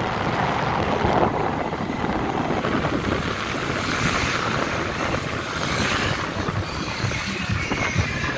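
Motorbike taxi riding along a street: the engine runs under steady wind noise rushing over the microphone.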